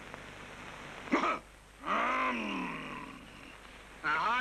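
A man's wordless vocal sounds: a short, harsh burst about a second in, then a long, drawn-out vowel sound whose pitch rises and then falls.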